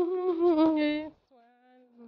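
A woman humming a tune without words: a long wavering note that breaks off about a second in, then a lower, softer held note.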